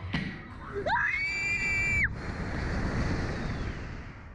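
A sharp knock as the reverse-bungee slingshot ride is released, then a girl's scream that rises and holds high for about a second before cutting off, followed by wind rushing over the microphone as the seat shoots upward.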